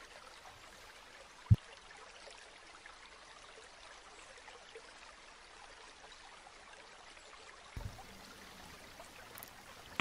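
Faint, steady trickling of a small stream, with one short, loud low thump about one and a half seconds in and a softer one near the eighth second.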